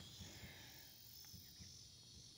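Near silence: faint outdoor ambience with a steady high-pitched chirring of crickets.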